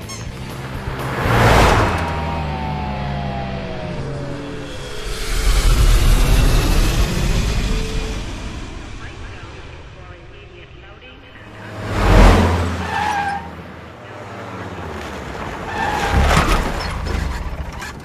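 Film soundtrack of a pizza delivery truck being driven hard: engine running and tires skidding, with three sudden loud bursts about a second and a half in, about twelve seconds in and near the end, over background music.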